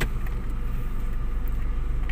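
Honda automatic car's engine idling, heard from inside the cabin as a steady low hum.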